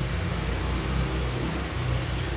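Steady hiss of rain falling, with a low steady hum underneath.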